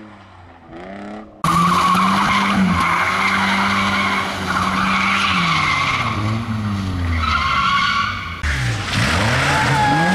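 Rally cars driven hard through corners, engines revving up and down through the gears while the tyres skid and squeal on the road. A fainter engine is heard for the first second and a half, then a sudden cut to a loud, close car, and another abrupt change near the end.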